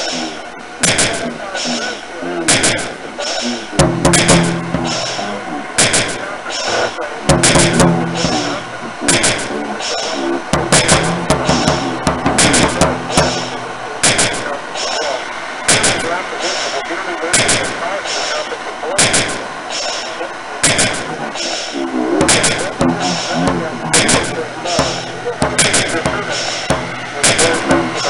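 Experimental noise-rock sound collage: sharp bangs repeat irregularly, one or two a second, over a dense noisy bed. Low, voice-like drones swell in and out over it several times.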